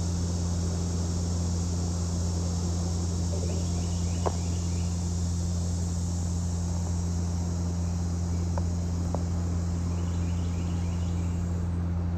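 Steady outdoor ambience at a pond: a constant low hum under a high hiss, with two brief runs of faint repeated chirps and a few soft clicks.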